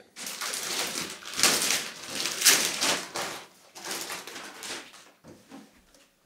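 Clear plastic wrap being torn and pulled off a cardboard box, crinkling and rustling in several surges, dying away about five seconds in.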